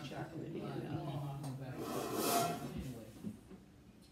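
Stand mixer motor running with a steady hum, stopping a little under two seconds in. A brief scrape or rustle follows.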